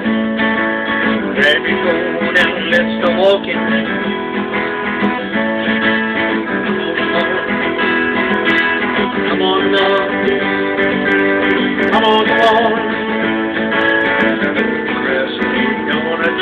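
Epiphone acoustic guitar strummed in a steady rhythm, an instrumental break between sung verses.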